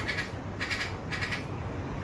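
A bird giving three short, harsh calls about half a second apart, over a low background rumble.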